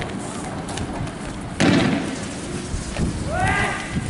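A single loud bang, a tear gas round fired in a street clash, about one and a half seconds in, followed near the end by a short shout.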